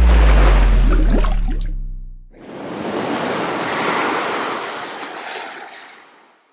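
Closing electronic sound effects. A deep synth bass tone slides down in pitch under a hiss and fades out about two seconds in. Then a swell of noise like a breaking wave rises and dies away.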